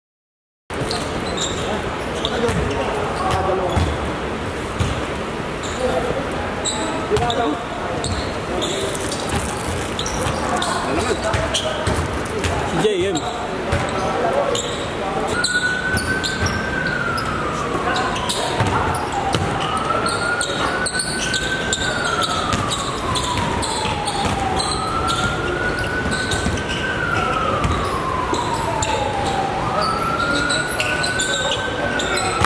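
Basketball bouncing and knocking on an indoor court, with players' voices echoing in the hall. From about halfway in, a siren wails over it, rising and falling about every four to five seconds.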